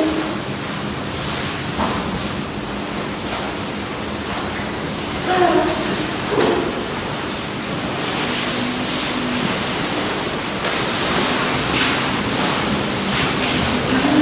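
Steady hiss of room tone in a quiet church, with a few brief, faint voice sounds in the middle.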